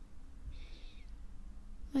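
A brief, faint breathy hiss about half a second in, a soft exhale close to the microphone, over a low steady hum; a spoken word begins right at the end.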